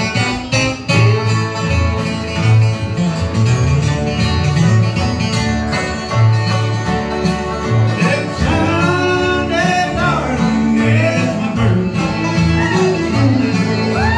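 A bluegrass band kicks off a song with an instrumental break: a fiddle, acoustic guitars and a banjo over a steady upright-bass beat.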